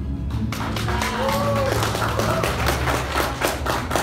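Background music with scattered audience clapping that starts about half a second in.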